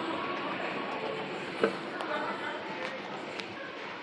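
2002 Mitsubishi escalator running steadily as a rider goes down and reaches the comb plate, with background voices around it. One sharp click about one and a half seconds in.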